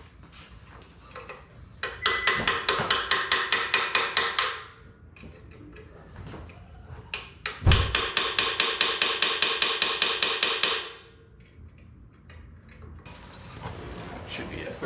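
Ratchet wrench clicking in two long runs of rapid, even clicks, each lasting about three seconds, with a metallic ring. A thump comes at the start of the second run.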